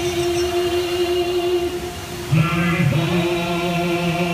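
Show soundtrack music with a choir singing long held notes; a fuller, louder chord with a lower voice comes in a little past halfway.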